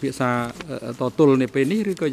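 Speech only: a man talking steadily into a microphone.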